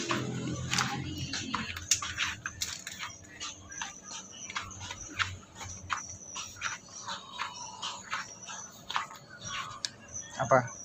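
Footsteps on a hard tiled floor: a toddler's small shoes and an adult's sandals making an irregular run of short taps, about two or three a second.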